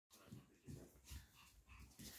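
Faint sounds of chihuahua puppies playing: small whimpers and soft low knocks, about every half second, of puppies tumbling together.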